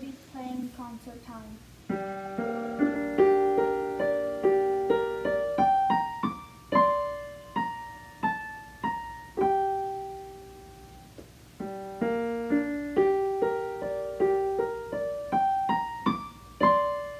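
Solo digital piano: a melody over chords, each note struck and fading, starting about two seconds in. Near the middle the phrase slows to a few long held notes, then starts again.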